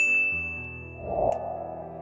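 A bright notification-bell ding, the kind of sound effect used for a subscribe button, struck once and ringing for over a second over soft background music. A short rush of noise with a click follows about a second in.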